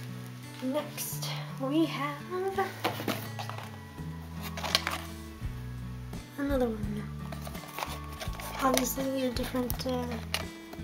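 Background music with low bass notes stepping from one pitch to the next, and a voice heard in a few short phrases. Scattered light clicks and taps come from a small cardboard toy box being handled.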